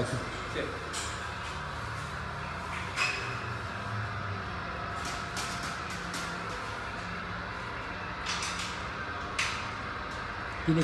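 Steady low workshop hum with a few faint, scattered clicks and knocks, and faint voices in the background.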